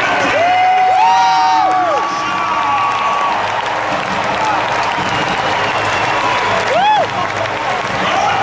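Arena crowd applauding and cheering at the final buzzer of a close basketball game, a steady loud wash of clapping and voices. Single loud calls rise out of it about a second in and again near the end.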